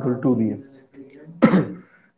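A few words of speech, then a person clears their throat once, a short sharp burst about one and a half seconds in.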